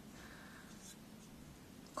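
Faint rubbing and handling noise of fingers turning a clear plastic tape binding presser foot, over quiet room tone.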